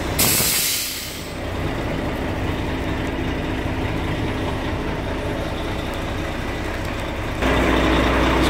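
A sharp hiss of compressed air lasting about a second, as the truck's air suspension vents when worked from its remote control, over the steady idle of a Volvo FH 540's 13-litre six-cylinder diesel. The engine idle grows louder near the end.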